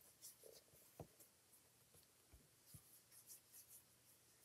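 Near silence: faint strokes of a Wink of Stella glitter brush pen on cardstock, with a few soft taps.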